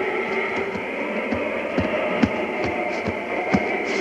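Old radio-drama background effects between lines of dialogue: a steady hiss with a faint held tone, and irregular soft thuds about two a second.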